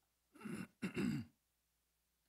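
A man clearing his throat: two short ahems in quick succession, within the first second and a half.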